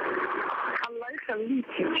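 Telephone line opening on air: about a second of line hiss, then a woman's voice coming over the phone, thin and cut off above the telephone band.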